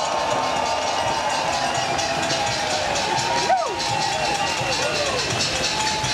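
Large crowd of demonstrators cheering and clapping in response to a rallying line, with individual shouts rising above the steady noise.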